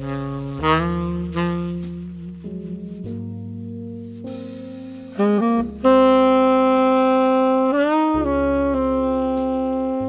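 Custom tenor saxophone, fitted with a 500 neck and an Otto Link Tone Edge slant mouthpiece, plays the opening of a slow jazz ballad over sustained low keyboard notes. About five seconds in the sax grows louder with a few short notes, then holds one long note that bends briefly in pitch.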